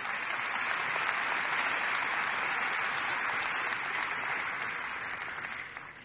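Large conference audience applauding, a steady clapping that fades away near the end.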